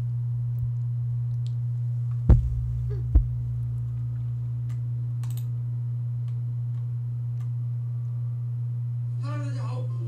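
A steady low hum runs throughout, with two dull thumps at about two and three seconds in.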